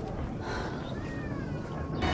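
A high animal call gliding downward in pitch over a steady low background rumble.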